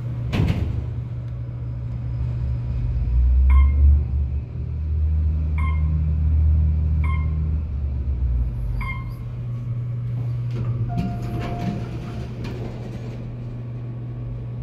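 Otis Elevonic 411 traction elevator: a clunk just after the start, then the car travelling with a low rumble over a steady hum, while four short beeps sound about every one and a half to two seconds. A single longer tone about eleven seconds in, then the doors sliding.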